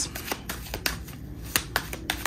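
A deck of oracle cards being handled and flipped through in the hands, the cards giving a string of sharp, irregular snaps and clicks.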